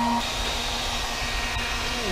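Handheld hair dryer running steadily, blowing hot air onto a plastic headlight cover to soften the adhesive of a stick-on reflector. Its tone shifts slightly a moment in and then holds steady.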